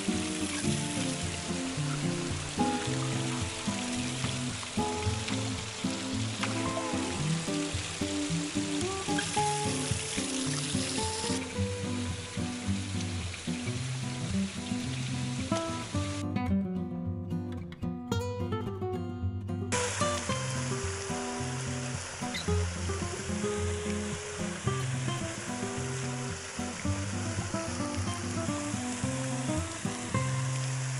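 Background music with a steady melody over the rushing hiss of running water. The water noise drops out for a few seconds past the middle, leaving the music alone.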